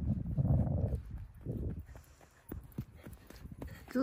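Footsteps in loose dune sand, soft irregular thuds as a man and a small child walk and run downhill. In the first second, wind rumbles on the microphone.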